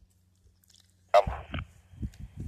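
Near silence, then about a second in a sudden short burst of static from a Puxing PX-728 handheld two-way radio's speaker, trailing into a faint steady hiss. Low knocks of the radio being handled follow.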